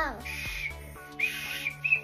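A small toy whistle blown in three short toots, each one steady high note, the middle one longest, over quiet background music.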